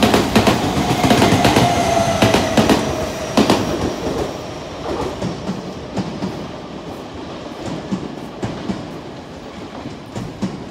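An Odakyu 30000-series (EXE) Romancecar express passing close at speed on a station through track, its wheels clacking over rail joints with a slowly falling whine, fading through the first half. Then a quieter rumble and scattered clicks from another Romancecar approaching in the distance.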